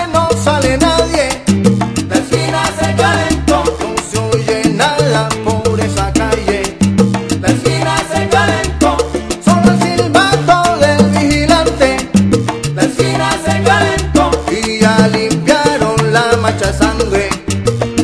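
Instrumental passage of a salsa song played by a salsa orchestra, with no singing: a bass line moving in short held notes under steady percussion and pitched melody instruments.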